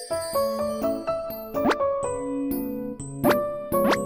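Light, playful background music of short pitched notes, with quick rising cartoon 'plop' sound effects, two of them close together near the end.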